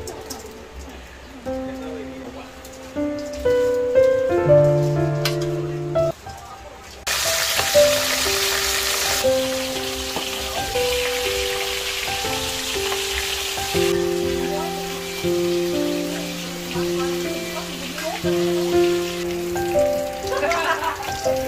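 Tilapia frying in hot oil in a wok: a loud sizzle starts suddenly about seven seconds in and settles to a steady, softer hiss. Background music with held instrument notes plays throughout.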